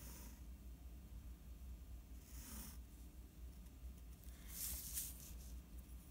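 Faint scratching of a graphite pencil drawing lines on paper along a plastic ruler, in three short strokes, over a low steady hum.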